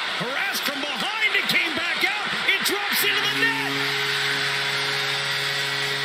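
Arena crowd roaring through a goalmouth scramble, with sharp clacks of sticks and puck. About halfway through, the arena goal horn starts, one steady blaring tone held over the cheering crowd, signalling a home-team goal.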